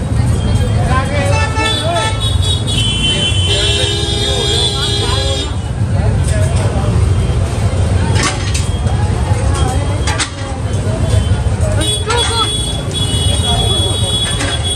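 Busy street crowd noise: many overlapping voices over a steady traffic rumble. Vehicle horns honk through it, one held for about two seconds a few seconds in, and another near the end.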